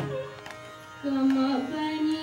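A mridangam stroke rings away at the start. About a second in, a woman's voice begins singing a held Carnatic note that bends in pitch.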